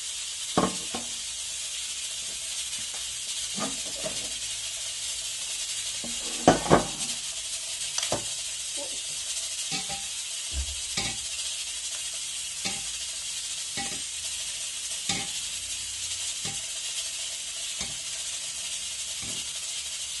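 Steady high hiss of a pressure cooker venting steam. Over it come scattered clinks and knocks of small metal empada tins being set into an air fryer basket, the loudest pair about six and a half seconds in.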